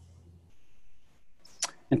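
A quiet pause in a conversation over a video call: faint room noise, one short click about one and a half seconds in, then a man starts to speak right at the end.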